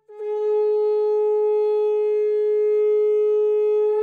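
A conch shell (shankha) blown in one long, steady blast, held at a single pitch after a sharp start.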